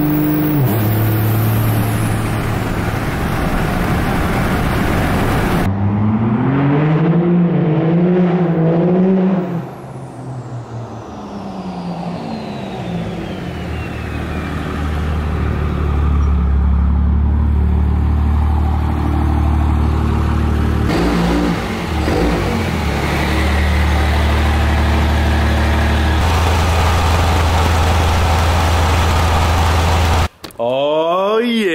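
Turbocharged 5.9 L Cummins diesel in a 2005 Dodge Ram pickup, heard first running steadily under way. About six seconds in it revs up and down in a wavering pitch. From about a third of the way through it runs steadily with a deep low note, with a thin high whistle falling slowly in pitch in between.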